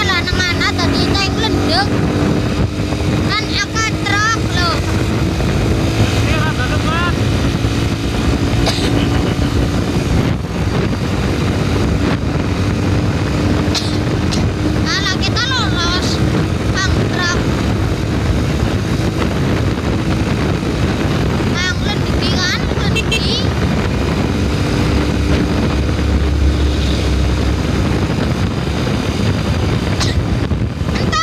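A moving vehicle's engine running under steady road and wind noise. Short warbling, wavering sounds come and go every few seconds.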